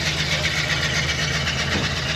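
1973 Pontiac ambulance's V8 engine idling steadily, its exhaust pulsing evenly.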